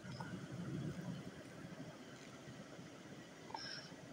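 Glass pot lid set down over a pan of eggplant slices cooking on low heat, a soft clink at the start followed by faint low noise and another small click near the end.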